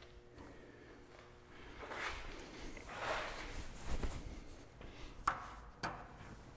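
Faint handling of a saw file and filing guide being set onto handsaw teeth in a wooden saw vise: soft rubbing a couple of times, then a few light clicks and knocks near the end.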